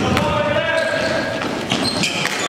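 Basketball dribbled on a gym floor, bouncing repeatedly in a large echoing hall, with voices around it.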